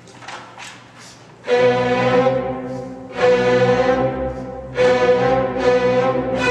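Symphony orchestra's string section comes in loudly about a second and a half in, playing sustained chords. The sound swells afresh twice, at about three and about five seconds. Before the entry there are only a few faint short sounds.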